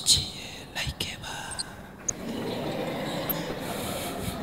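Soft, indistinct speech picked up by a handheld microphone, with a sharp knock at the start and another about a second in.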